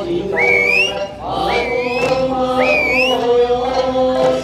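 Eisa dance music: chanting, sung voices and sustained notes, cut through about once a second by a sharp, rising, whistle-like call.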